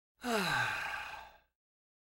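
A man's long sigh, falling in pitch and breathy, lasting just over a second.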